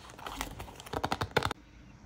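Clear plastic sheet-protector pages in a folder being turned by hand: a crinkly plastic rustle, then a quick run of sharp clicks and snaps that stops about a second and a half in.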